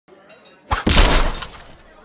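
A loud crash sound effect: a sharp hit, then a deep crash that dies away within about a second.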